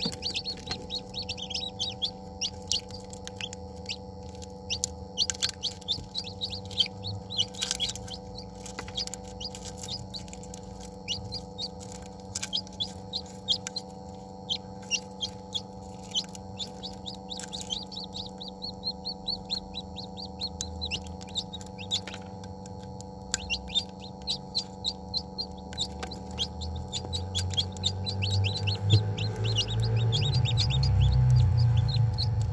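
Newly hatching chicken chicks peeping: many short, high-pitched peeps in quick runs, with a couple of brief pauses. A steady hum runs underneath.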